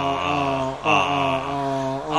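A monk's voice chanting a long, drawn-out 'Ah' syllable into a microphone as a mantra, in two held notes with a short break just under a second in.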